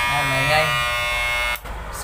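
Electric hair clipper running with a loud, steady buzz that drops away briefly near the end. The noise comes from the clipper's upper blade rubbing against the plastic cover.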